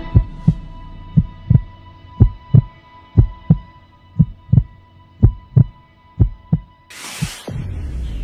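Heartbeat sound effect from an outro soundtrack: pairs of deep lub-dub thumps about once a second over a steady electronic hum, ending with a sudden hissing whoosh near the end.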